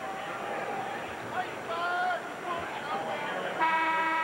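Arena crowd noise with scattered shouts, then about three and a half seconds in the scorer's-table horn sounds, a steady buzzy tone lasting into the next moment, signalling a substitution at the dead ball.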